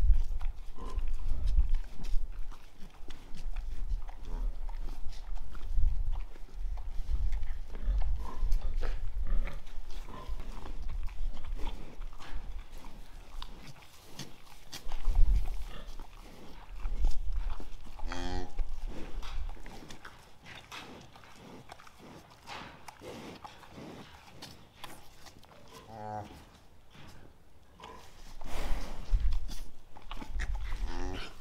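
Jersey cow licking her newborn calf, with a run of short rasping licks. She gives a few low calls to the calf, one about two-thirds of the way through and more near the end.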